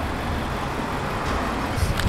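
Steady road-traffic noise, a low rumble of passing cars, with a brief click near the end.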